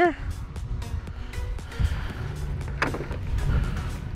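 A low, uneven outdoor rumble, with one brief sharp click near the middle.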